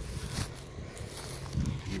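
Footsteps on a grass lawn with irregular low rumble on the microphone as it is carried.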